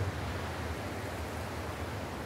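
Steady outdoor ambience: an even hiss over a low rumble, with no distinct events.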